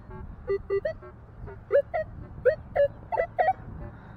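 Metal detector giving short electronic target beeps as its search coil sweeps over buried metal, around ten in all: some low and flat, others rising in pitch.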